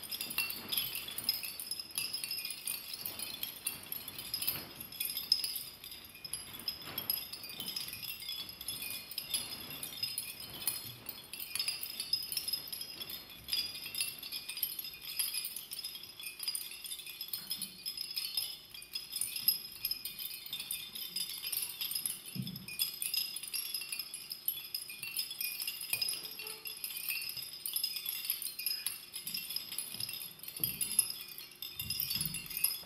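Continuous high tinkling and jingling of chimes, dense and unbroken, with a faint steady low hum coming in about halfway through.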